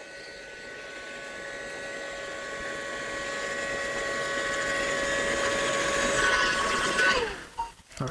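Electric heat gun running on high, its fan motor giving a steady whine over rushing air and growing gradually louder. About seven seconds in it fades and the whine falls in pitch as the motor winds down.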